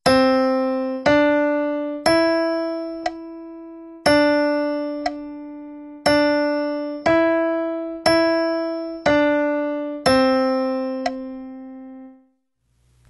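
Keyboard piano playing a melodic dictation: a slow melody of single notes on C, D and E in C major and 2/4 time, mixing one-beat and two-beat notes, about one note a second. Each note is struck and fades, and the melody ends on a held low C.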